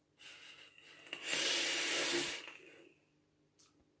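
A long lung hit drawn through a rebuildable dripping atomizer on a vape mod: air hisses through the atomizer's airflow with a faint steady whistle, swells to its loudest for about a second in the middle, then fades away.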